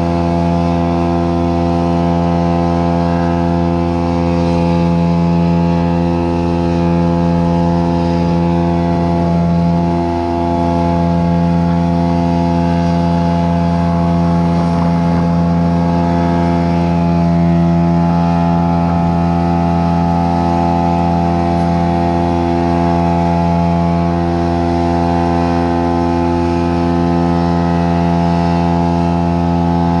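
Engine of fiber-optic cable installation equipment running steadily, a loud drone that holds one pitch without revving.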